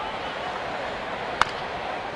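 Crack of a wooden baseball bat hitting a pitched ball: one sharp strike about a second and a half in, over the steady murmur of a ballpark crowd.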